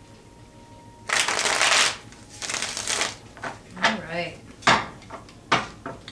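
A tarot deck being shuffled by hand: two rustling bursts of shuffling, each just under a second long. Later come a brief hum-like vocal sound and two sharp taps of the cards.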